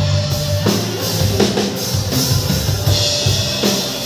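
Live rock band playing loud: a drum kit beating out the rhythm under electric guitar and bass guitar.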